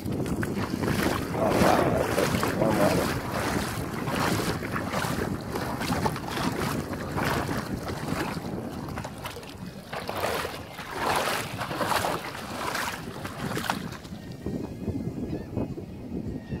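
Shallow sea water splashing and swishing in a rough, repeated rhythm as someone wades through it, with wind on the microphone.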